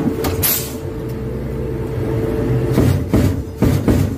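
Armored vehicle's engine running, heard from inside the hull as a steady low rumble with a thin steady whine. From about three seconds in comes a run of sharp bangs, roughly two a second.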